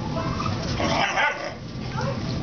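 Doberman puppies play-fighting and vocalising, with a short, high-pitched bark about a second in.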